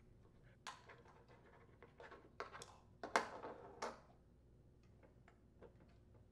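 Quiet handling noises: scattered clicks and scuffs from a small-engine fuel pump, its rubber fuel hoses and pliers being worked by hand, the loudest about three seconds in, then a few faint ticks.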